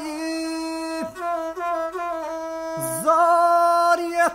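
Gusle, the single-stringed bowed folk fiddle of the Balkan epic singers, playing a nasal, held melody line with small slides and breaks between notes. About three seconds in it grows louder with fast wavering ornaments.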